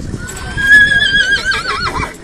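A horse whinnying: one long high call that rises slightly, holds, then quavers and drops in pitch before cutting off near the end.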